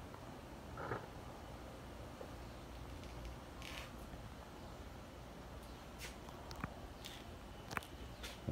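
Quiet backyard ambience: a faint steady background hiss with a few soft clicks and taps scattered through it.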